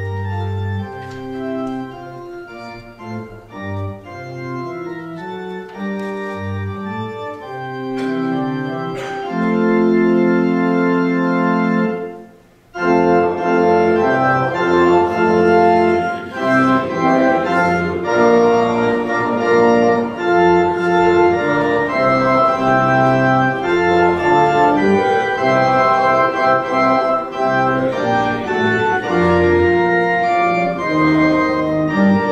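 Church organ playing a hymn tune in sustained chords. The introduction ends on a long held chord and a brief pause about twelve seconds in, then the playing resumes louder and fuller for the first stanza.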